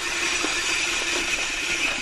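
A dirt jump bike coasting over packed dirt: a steady whirring buzz from the rear hub's freewheel ratchet, mixed with tyre rolling noise and wind rush.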